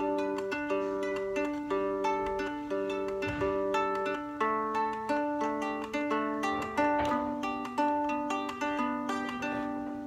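Three-string hobo fiddle, a cigar-box-style guitar tuned 1-5-1, fingerpicked in a looping low-high-middle pattern of single plucked notes, about three a second, with a little syncopation. The fretted notes shift several times as the left hand moves through the riff's chord shapes.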